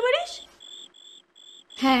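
Crickets chirping in short, evenly spaced high-pitched pulses, about two a second, as the night background under a woman's voice.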